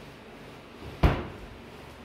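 A white-painted kitchen base-cabinet door being pushed shut, closing with a single sharp bang about a second in.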